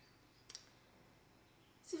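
Near-silent pause broken by one brief, sharp click about half a second in; a voice starts speaking right at the end.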